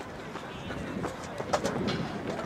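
Indistinct voices of people talking at the trackside, with a couple of sharp taps about one and a half seconds in.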